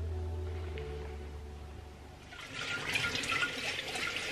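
Background music fades out over the first two seconds. Then water runs from a kitchen tap, getting louder toward the end.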